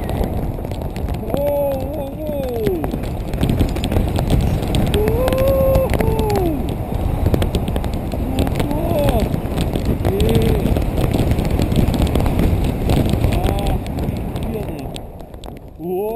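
Strong wind buffeting the action camera's microphone in paragliding flight as the tandem wing is put into turns. Over it come several drawn-out vocal cries that rise and fall in pitch.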